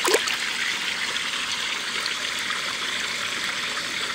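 Steady trickling and splashing of koi-pond water kept moving by its pumps, with the surface stirred by koi crowding a hand. There is one brief louder sound right at the start.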